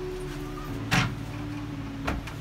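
Hinged wooden storage-bench seat lowered shut, a single knock about a second in.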